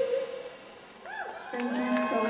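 A singer's held note ends in the first half-second; after a brief lull the audience starts whooping and cheering, with scattered clapping.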